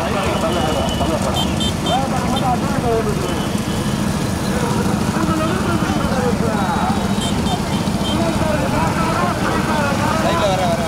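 A pack of motorcycle engines running behind racing bullock carts, with many voices shouting and calling over them. A few short high beeps come in twice, once in the first couple of seconds and again past the middle.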